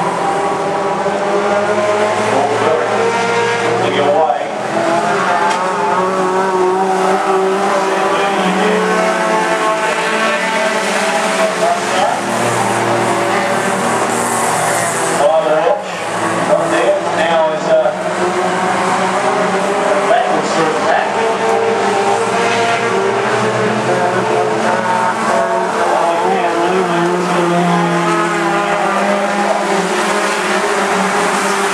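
Several junior sedan race cars' engines running hard on a dirt oval, the pitch of the engines rising and falling as the cars lap. Near the middle the sound drops briefly, then comes back with a few knocks.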